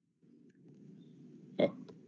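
Low background noise from an open microphone on a video call. About one and a half seconds in there is a single short, throaty vocal sound, and a faint click follows.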